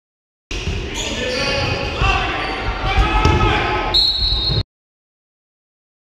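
Live sound of an indoor basketball game: players' voices and shouts, the ball bouncing on the wooden floor, and a shrill referee's whistle near the end. It starts about half a second in and cuts off suddenly after about four seconds.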